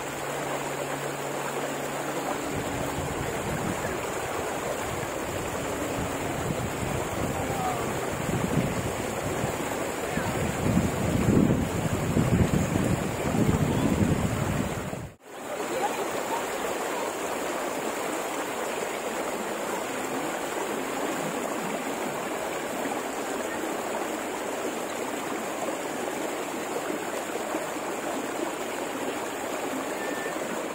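Steady rush of thermal spring water running down a shallow travertine channel, with wind gusting on the microphone for several seconds mid-way. The sound drops out for a moment about halfway through.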